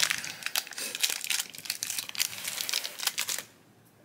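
Foil-lined plastic blind-bag packet crinkling as it is opened by hand: a rapid run of crackles that stops suddenly about three and a half seconds in.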